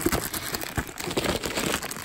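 Rustling, scraping and irregular light knocks of a cardboard box and its plastic packaging being handled.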